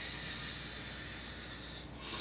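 A person's long hissing breath close to the microphone, lasting almost two seconds and cutting off near the end.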